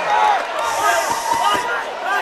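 Boxing gloves landing in a clinch at the ropes: a few dull thuds of punches in quick succession.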